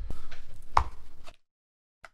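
Handling noise from a person sitting down on a plastic chair and grabbing the headphones around their neck: rustling with one sharp knock a little under a second in, cut off abruptly partway through.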